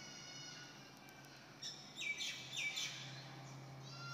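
Birds chirping in the background, with a short run of louder chirps about two seconds in, over a low steady hum.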